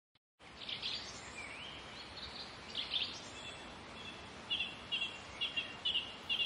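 Birds chirping over a faint, steady outdoor hiss. From about the middle on, a run of short chirps repeats roughly twice a second.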